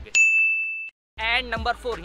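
A single bright electronic ding, a sound effect laid over a cut in the edit. It is one steady high tone that starts suddenly, holds for under a second and then cuts off abruptly.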